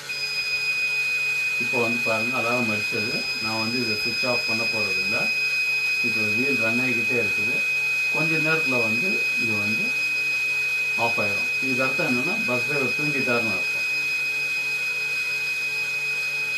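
Electronic buzzer of a driver-alert alarm circuit, sounding one steady high-pitched tone that starts suddenly and holds without a break. It is the alarm meant to wake a drowsy driver.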